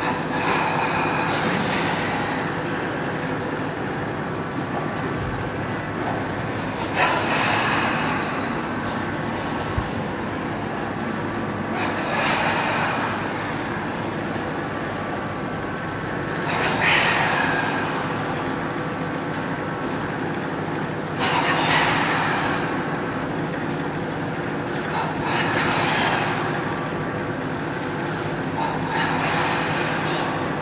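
A steady mechanical hum runs throughout. Over it, a long, noisy breath swells and fades about every four to five seconds, seven times in all: slow, deep breathing during a yoga breathing exercise.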